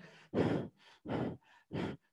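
A man panting three quick, heavy breaths, imitating someone out of breath from running.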